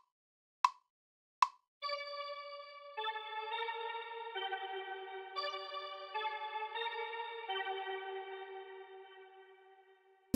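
GarageBand's metronome count-in ticks twice, about three-quarters of a second apart. Then a synth pad played on the iOS keyboard with the 'Autumn Haze' patch comes in about 2 s in: sustained chords that change several times and fade out near the end.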